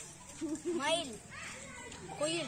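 Children's voices: a few short spoken words or calls in the first second, then a quieter lull.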